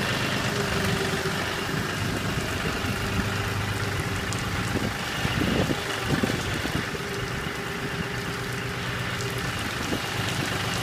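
Farm tractor engine running steadily at idle, a low even hum. A brief louder stretch of irregular noise comes about five to six seconds in.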